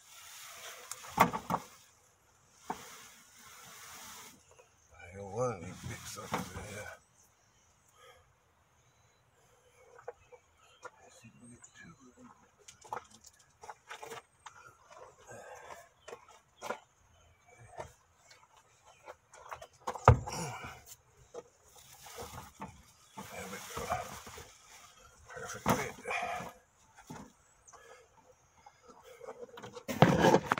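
Wheels with their tires being shoved into the back of a truck: scraping and knocking, with a sharp thump about twenty seconds in.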